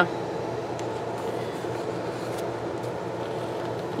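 Steady low hum of room background noise, with a few faint light ticks from stickers and paper being handled on a planner page.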